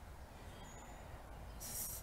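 Quiet outdoor background: a steady low rumble under a faint hiss, with a short high hiss near the end.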